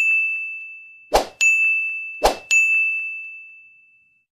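Animated button sound effects: a bright single-pitched ding rings out, then twice more a short swoosh is followed by another ding, about a second apart, as each button pops onto the screen. The last ding fades out near the end.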